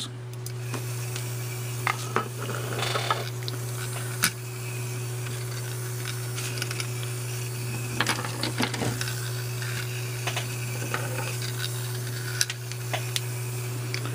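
Small DC gear motors of a D2-5 line-following robot car kit running with a faint steady whine, broken by scattered clicks and knocks as the little car rolls and bumps across its paper track. The car runs but does not follow the line as it should; the builder suspects the adjustment potentiometers.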